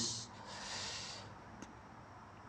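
A man drawing a breath between phrases of recitation: a soft, airy in-breath lasting under a second, with a faint click near the end.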